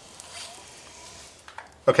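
Quiet garage room tone with a couple of faint ticks, then a man's voice saying "okay" at the very end.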